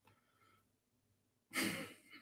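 A person's short, breathy sigh close to the microphone, sudden and loud, about one and a half seconds in, after quiet room tone.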